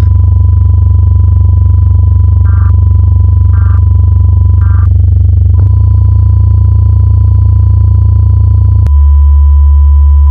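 Synthesized emergency-alert audio: a loud, steady low electronic drone with a thin steady high tone above it. Three short data-like beeps about a second apart, typical of an EAS end-of-message signal, come in the middle. The drone shifts slightly about halfway through and again near the end.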